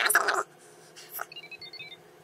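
iPhone 4 phone keypad tones: a quick run of short beeps about a second and a half in as digits are tapped on the dialer, after a brief burst of noise at the start.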